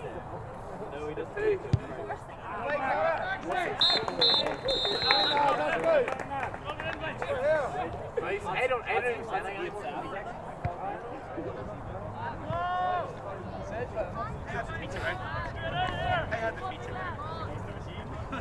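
Players and spectators shouting and calling across a Gaelic football pitch, with a referee's whistle blown three times about four seconds in, two short blasts and then a longer one.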